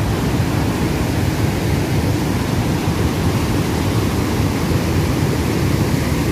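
Cold lahar from Mount Semeru rushing by: a steady, loud low rushing noise of a torrent of muddy water carrying sand and stones.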